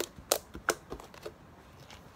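Fingertips poking into soft purple slime, making a quick series of about five sharp little pops and clicks that stop about a second and a half in.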